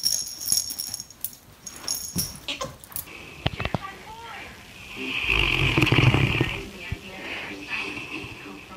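Large mastiff-type dog snoring in its sleep, with one long, loud snore about five to seven seconds in and softer snoring after it. In the first three seconds, a string of short clicks and squeaks.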